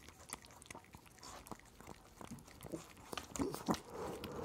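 Small dog licking a person's nose close to the microphone: quick wet tongue smacks and clicks, growing louder in the last second.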